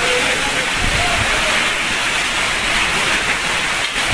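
Cyclone-force wind and heavy wind-driven rain making a loud, steady rushing hiss, with a low rumble of wind buffeting the microphone about a second in.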